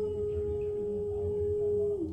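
A woman's voice holding one long, nearly pure note, which dips slightly in pitch at the start and steps down a little at the end, over a low murmur.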